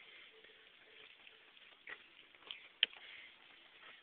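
Low background hiss with a few faint clicks. The sharpest click comes near three seconds in.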